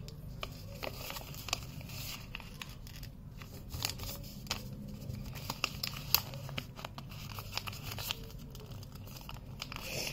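A sheet of A4 paper being folded and creased by hand, with irregular crinkles and small sharp crackles as the paper bends and is pressed flat.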